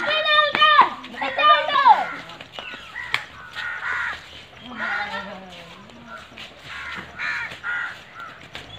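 Boys' voices shouting and calling, with two loud high-pitched calls in the first two seconds, then quieter chatter.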